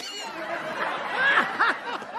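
Sitcom audience laughter, many voices laughing together, swelling and then dying down near the end.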